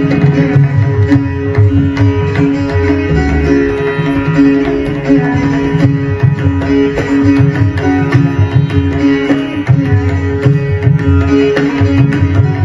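Sitar and tabla playing a Hindustani raga together. A plucked sitar melody rings over a steady drone, with a dense, unbroken run of tabla strokes underneath.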